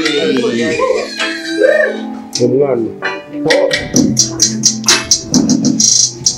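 Beatboxing into a handheld microphone, with no words. The first couple of seconds are gliding, wordless mouth sounds, and from about three and a half seconds in comes a quick rhythm of sharp, snare- and hi-hat-like clicks.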